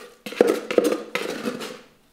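Metal trowel scraping and knocking against the inside of a plastic tub as thick bonding plaster is scooped out and scraped off onto a hawk: several short scrapes and clicks in quick succession.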